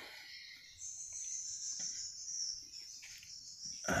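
A steady, high-pitched insect trill, like a cricket's, sets in about a second in and holds on, with faint small handling sounds beneath it.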